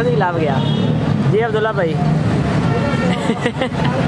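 Voices talking in short bursts over a steady low hum.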